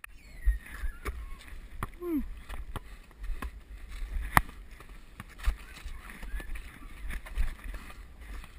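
Outdoor pickup basketball heard from a head-mounted GoPro: low wind rumble on the microphone, irregular knocks of the basketball bouncing and footsteps on the court, the sharpest about four seconds in, and brief voices of players.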